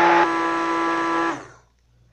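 Handheld immersion blender running submerged in a tub of liquid soap mixture, a steady whirr with a slight change in tone a quarter second in, then switched off and winding down about a second and a half in.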